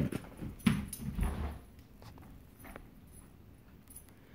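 A dog running off after a thrown ball, its paws giving a few dull thumps in the first second and a half, then only faint taps.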